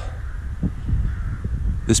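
Wind buffeting the microphone, a low uneven rumble, in a pause between spoken words; a voice starts again at the very end.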